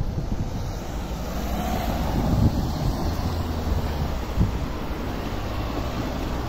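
Wind buffeting a phone's microphone: a steady low rumble, with a couple of brief thumps from the phone being handled while walking.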